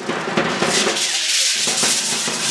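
Many hand rattles (sonajas) of a matachín dance troupe shaking together in a dense rattle.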